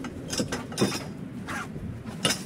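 Metal hammock-stand tubes clinking and knocking against one another as they are packed into a fabric carry bag: three sharp clinks less than a second apart, over the rustle of the bag being handled.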